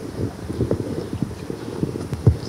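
A string of irregular low thumps and knocks, several a second.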